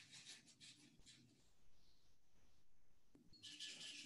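Near silence from a dropped video-call connection, with only faint, scattered bits of high-pitched noise.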